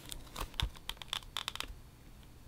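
Plastic shrink wrap on a sealed vinyl LP jacket crackling in a quick run of small, sharp clicks as hands grip and handle it, stopping shortly before the end.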